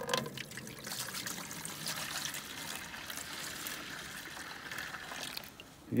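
Maple sap poured from a metal sap bucket into a plastic pail: a steady trickling, splashing stream of liquid that stops shortly before the end.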